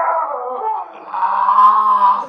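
A man's loud, drawn-out cry in two parts: the first falls in pitch, the second is held steady until it stops at the end.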